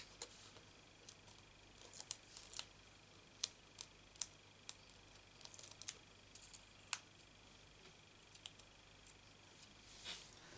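Light, irregular clicks and taps of fingers handling tiny cardstock hexagons and pressing them onto a paper card panel, about fifteen short sharp ticks spread over a quiet background.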